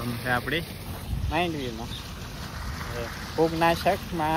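A man's voice in short phrases over a steady rush of wind on the microphone.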